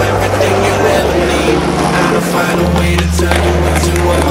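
Dubstep music with sustained deep bass notes that step down in pitch about two and a half seconds in, with skateboard wheels rolling on concrete under it.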